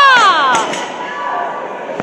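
A loud, drawn-out shout, its pitch arching up and then down, fading out within the first second, over background crowd chatter.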